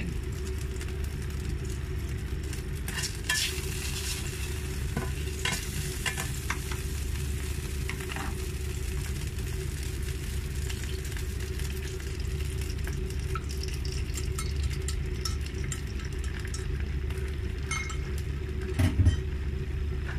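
Beaten egg cooking in a buttered non-stick frying pan over low heat, sizzling gently, with scattered small clicks from chopsticks and utensils against the bowl and pan. A steady low hum runs underneath, and there is a short knock near the end.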